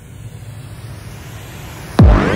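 A soft filtered white-noise sweep over a steady low hum: a quiet break in a dubstep-style electronic track.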